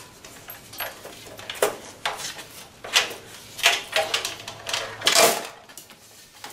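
Metal clattering and knocking: an aluminium LED heat sink bar being handled against a TV's metal back chassis, about eight separate knocks and scrapes, the loudest about five seconds in.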